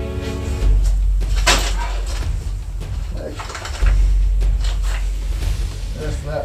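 Background music fading out, then scuffing and scraping of clothes and hands against cave rock as a person climbs through a tight passage. One loud scrape comes about a second and a half in, over a low rumble.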